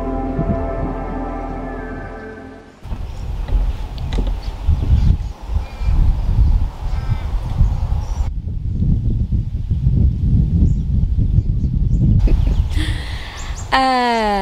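Soft ambient music with sustained tones fades out over the first three seconds. Then wind buffets the microphone in gusts, with a few faint bird calls, and a woman's voice comes in, falling in pitch, near the end.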